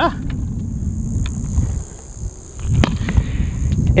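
Low rumble of handling noise on the microphone as the awning's black leg pole is handled at ground level, with a couple of sharp clicks about one and three seconds in. A steady high insect drone runs behind it.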